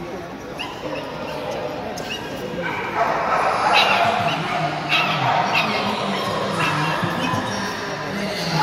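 Dogs barking and yipping in short calls about a second apart, over the chatter of a crowd in a large echoing hall.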